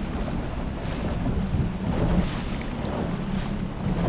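Outboard motor of an inflatable skiff running steadily at low speed, with wind buffeting the microphone and water slapping around the hull.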